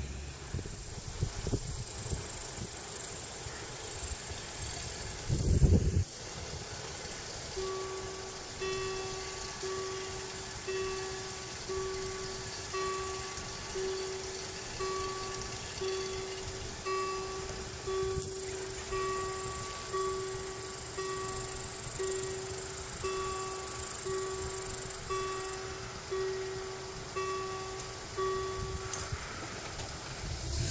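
Level-crossing warning bell ringing with a regular strike about once a second, starting about eight seconds in and stopping shortly before the end: the signal that the crossing is closing for a train. Before it, about five seconds in, comes a brief loud low rumble.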